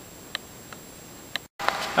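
Faint steady hiss of room noise with two short clicks about a second apart, and a fainter tick between them. The sound drops out completely for a moment near the end.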